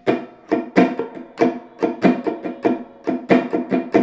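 Hollow-body archtop electric guitar strumming a small G dominant 7 chord in a syncopated funk rhythm: short, clipped strums, about four a second, each chord choked off quickly.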